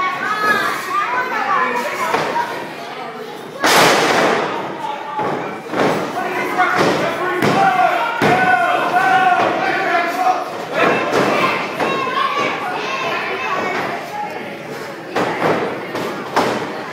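Wrestlers' bodies hitting the canvas of a wrestling ring: one loud slam about four seconds in, then several smaller thuds, echoing in a large hall. Voices shout and call out throughout.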